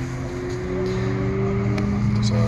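A car engine running at a steady speed, its drone holding an almost level pitch with a slight slow rise.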